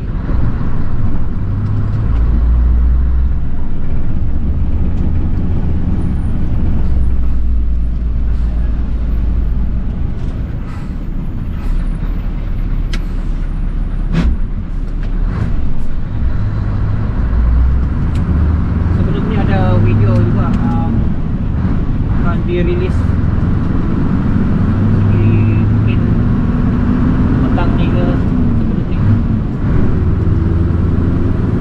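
Scania truck's diesel engine running, heard from inside the cab while driving on the highway: a steady low drone with road noise, its lowest pitch shifting a few times as the engine load changes.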